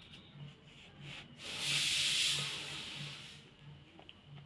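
A hissing rush of noise that swells about a second and a half in, peaks, and fades away over roughly two seconds.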